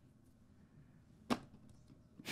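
Near silence with a single short, sharp click a little past the middle.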